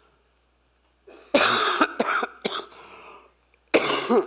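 A woman coughing into a lectern microphone: a fit of about four hard coughs, starting about a second in, the last near the end.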